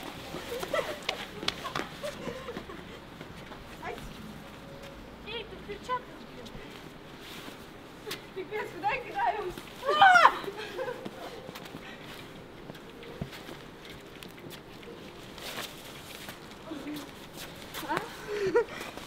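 Women's voices shouting and squealing without clear words during a snowball fight: short scattered calls, and one loud yell that rises and falls about ten seconds in. A few faint soft knocks run underneath.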